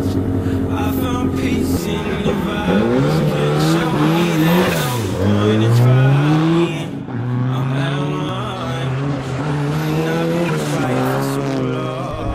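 Renault 21 Turbo rally car's engine accelerating hard. Its pitch climbs from about two seconds in, drops sharply at a gear change about five seconds in, climbs again and then runs fairly level under load.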